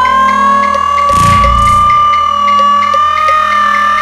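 Electronic music: a held, slightly wavering electronic tone over a steady low drone and a regular light ticking, with a short low rumble about a second in.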